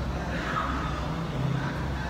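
Steady room noise in a large, quiet gym, with a constant low hum underneath.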